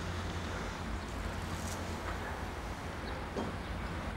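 Steady outdoor background noise: a constant low rumble under a faint even hiss, with a few faint ticks and no distinct event.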